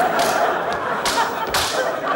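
A man biting and slurping noisily into a juicy piece of fruit, with three sharp wet bites or slurps over the two seconds.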